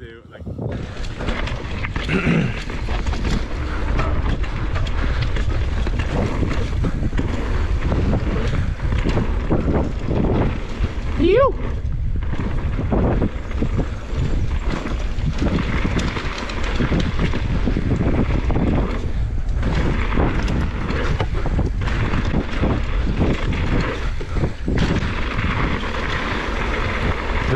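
Mountain bike riding down a dirt trail, heard from a body-mounted action camera: wind buffeting the microphone over a constant rattle of tyres and bike on dirt, roots and rocks. A short rising tone sounds about eleven seconds in.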